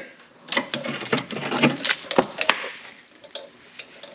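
A hand tool clicking, knocking and scraping against a metal box cover, a quick run of sharp clicks over the first two and a half seconds, then only a few scattered taps.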